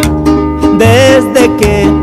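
String-band music in an instrumental break between verses: plucked strings and bass keep a steady beat, and a wavering melody line, likely a fiddle, comes in about a second in.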